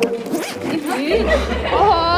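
A jacket zipper being pulled open, a short rasp.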